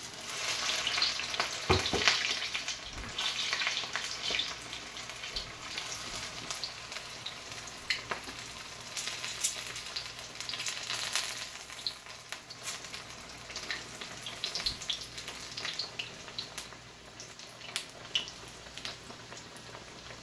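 Flour-battered cabbage pastries deep-frying in hot oil in a wok, a steady sizzle full of crackles. It is loudest in the first few seconds, as a fresh piece goes into the oil, and there are a few sharp clicks about two and three seconds in.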